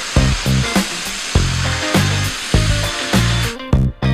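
Upbeat background music with bass and guitar notes, overlaid by a loud, steady hiss that stops about half a second before the end.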